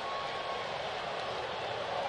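Steady ballpark crowd noise, an even hubbub with no single voice standing out, and a faint thin tone in the first second.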